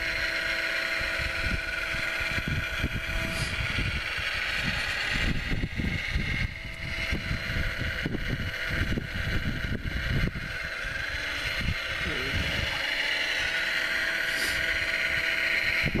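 Radio-controlled scale model Wedico Cat 966 wheel loader working in snow, its electric hydraulic pump and drive motors whining steadily, with a lower tone dropping out a few seconds in. Heavy, irregular wind buffeting on the microphone runs underneath.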